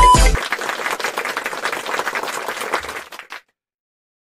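Applause, a dense patter of clapping lasting about three seconds and cutting off suddenly. At the very start, electronic music and a steady beep, the test tone of TV colour bars, break off.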